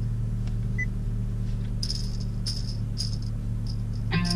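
Steady low hum of the idling 1.5-litre turbo engine of a 2017 Honda Civic EX-T, heard inside the cabin, with a few short rattles in the second half.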